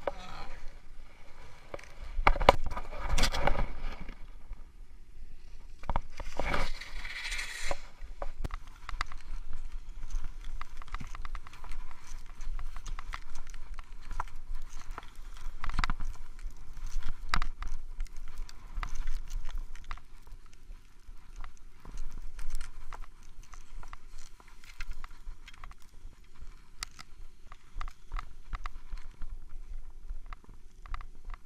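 Skis sliding and scraping through snow, with many short scrapes and clicks, heard from a camera worn on the skier's chest. Two loud rough rustling stretches near the start come from the jacket and gear rubbing over the camera as the skier gets up.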